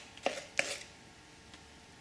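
A large spoon knocking and scraping against a mixing bowl and silicone cupcake case while spooning cake batter: two short clicks in the first second, then faint room tone.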